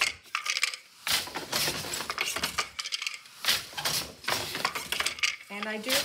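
Wooden floor loom in use: a boat shuttle is thrown through the open shed and caught, and the beater is knocked against the cloth, giving a run of sharp wooden clacks and rattles at an uneven rhythm.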